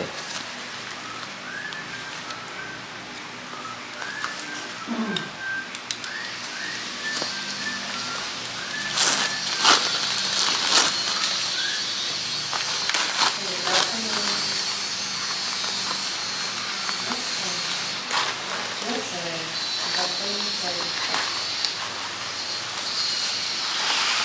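Newspaper wrapping crinkling and tearing as it is pulled open by hand, with several sharper rips around the middle.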